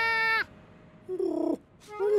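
Cartoon animal vocal sounds: a held, pitched call that ends about half a second in, then a short call falling in pitch just past a second.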